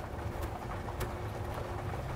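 Outdoor background noise: a steady low rumble with faint bird calls.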